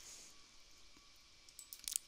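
A few faint, short computer mouse clicks in the second half, over quiet room tone.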